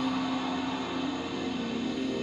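Television music heard across a small room: held tones over a steady hiss.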